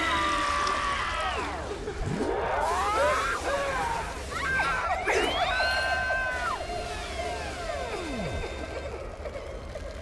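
Experimental electronic sound-art music: several pitched tones glide up and down in long sweeping arcs, with a few notes held steady, over a constant low hum.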